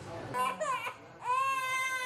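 Infant crying at a vaccine injection: two short falling wails in the first second, then a long, held cry from a little after a second in.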